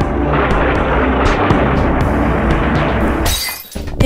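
Cartoon soundtrack: a dense, noisy sound effect over a steady low music bed for about three seconds. It ends in a short high hiss and a brief dip in level.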